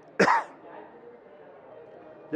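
A man clears his throat with one short cough.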